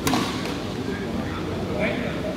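Background chatter of several people's voices, with one sharp knock right at the start.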